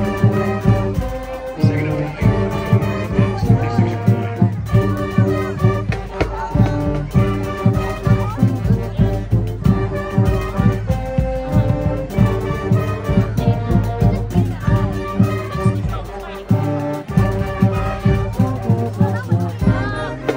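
Marching band brass section playing a stand tune, sousaphones carrying a loud bass line under the higher horns, over a steady drum beat.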